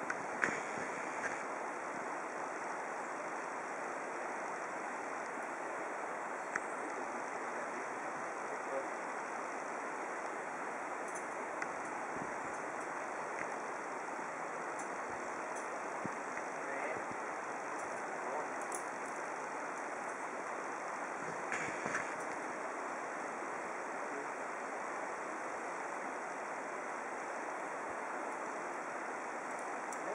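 Steady outdoor rushing noise, even throughout, with a few faint clicks and knocks scattered through it.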